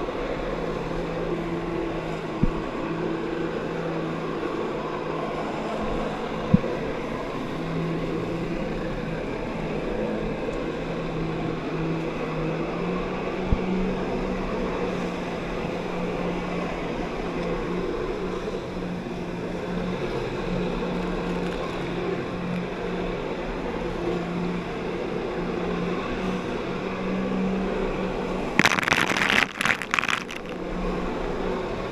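Personal watercraft engine running steadily to drive a flyboard through its hose, over the rush of churning water; its pitch steps up slightly a couple of times in the first half. Near the end, a loud burst of water splashing onto the microphone.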